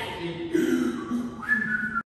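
Someone whistling a short tune of held notes, with a higher note coming in near the end that steps down in pitch.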